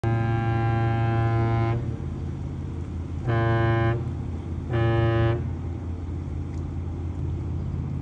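The H. Lee White's ship horn, a 1974 Great Lakes self-unloading freighter, sounding a salute: one long blast followed by two short blasts, the master's salute signal.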